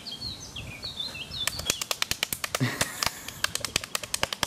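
A man slapping his bare belly with his hands: a rapid, irregular run of sharp slaps starting about a second and a half in, after a few small bird chirps.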